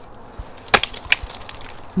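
Ice axe pick striking a bulge of waterfall ice: one sharp hit about three-quarters of a second in, followed by about a second of scattered clicks and tinkles as the ice fractures and chips break off.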